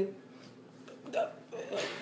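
A person's voice in short, broken bursts, three in the space of two seconds.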